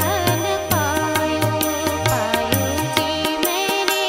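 A woman singing a wavering melody with instrumental accompaniment: a steady held drone note under her voice, and percussion striking about four times a second over low drum beats.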